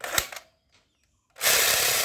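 Battery-powered blue plastic toy submachine gun firing its electronic effect when the trigger is pulled: a few plastic clicks, then a loud, even, buzzing rattle that starts about one and a half seconds in and lasts about a second.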